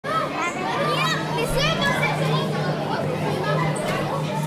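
Many children's voices chattering and calling over one another, as on a playground, over a steady low hum.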